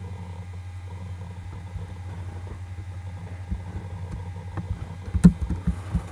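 A steady low electrical mains hum, with a few short clicks in the second half and one sharp click about five seconds in, as a terminal window is opened on the computer.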